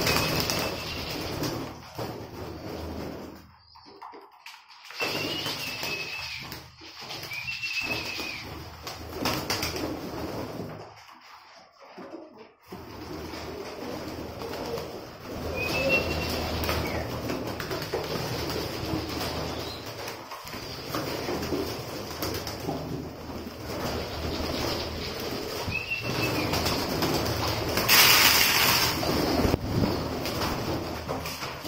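Flock of domestic pigeons cooing, with wing flaps and short high calls now and then. Near the end comes a loud burst of flapping wings as the birds crowd onto the feeding tray.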